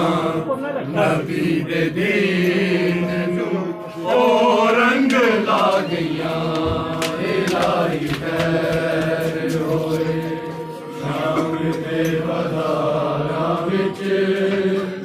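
Men's voices chanting a Punjabi noha, a lament for Imam Hussain, in long held notes, with short breaks between lines about four and eleven seconds in.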